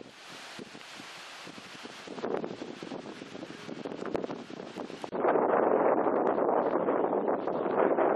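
Outdoor ambience with wind noise on the microphone: a soft, even hiss for about five seconds, then suddenly louder and denser.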